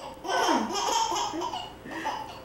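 A baby laughing heartily, a string of short laughs beginning about a third of a second in.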